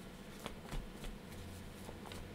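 A tarot deck being shuffled by hand: soft, irregular card clicks and rustles, with two sharper snaps in the first second.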